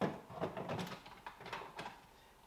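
Plastic knocking and rubbing as a filled water tank is set into the back of a countertop reverse-osmosis water purifier: one sharp knock at the start, then several softer knocks and scrapes.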